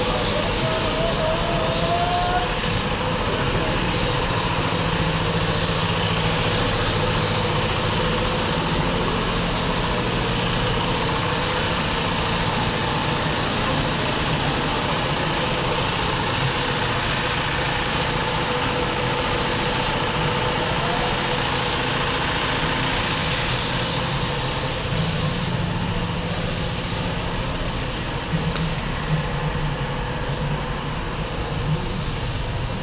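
Bus engine idling steadily, with a low hum and a faint steady tone, and faint voices in the background.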